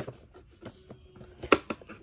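A few light plastic clicks and knocks as toys are handled in a plastic toolbox, with faint rustling between them.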